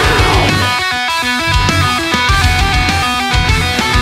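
Metalcore band playing: distorted electric guitars, bass guitar and drums at full volume.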